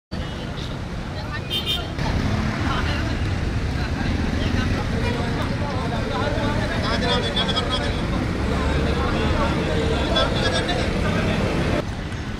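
Road traffic running with a crowd of people talking indistinctly, getting louder about two seconds in.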